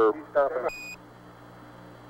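A ground radio call from Mission Control ends, and a short, high Quindar tone beeps once, marking the end of the transmission. After it, the radio link carries only a steady hiss and a low hum.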